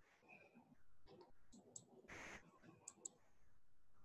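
Near silence with faint computer mouse clicks: two quick pairs of clicks, and a brief soft hiss about two seconds in.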